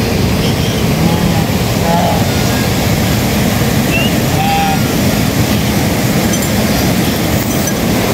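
Fast-flowing mountain stream rushing loudly and steadily, with a few brief faint calls above it.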